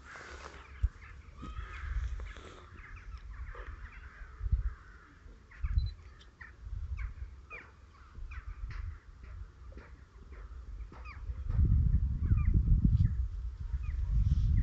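Birds calling outdoors, a string of short harsh calls. A low buffeting rumble on the microphone grows loudest over the last few seconds.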